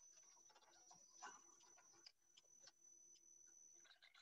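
Near silence: faint room tone with a thin high whine and a few soft clicks.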